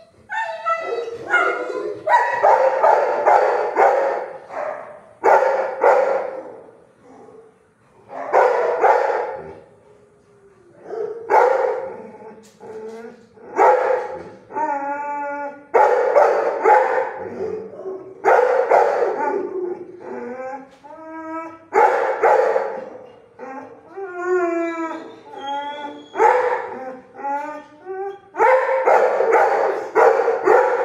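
Kennelled shelter dogs barking and howling in repeated loud bursts about every two to three seconds, some bursts drawn out into wavering, howling cries.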